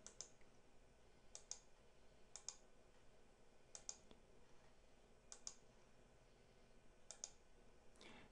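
Faint computer mouse button clicks, about six over a few seconds, several coming in quick pairs like double-clicks, over near-silent room tone.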